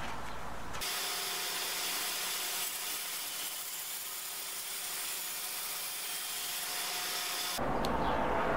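Bandsaw cutting through a clear cast-resin cylinder with a cholla cactus skeleton set in it: a steady hiss of the blade in the resin, with faint steady tones from the machine. It starts about a second in and stops just before the end.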